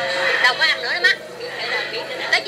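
People's voices talking, mostly in the first second, then quieter; only speech and chatter, no other distinct sound.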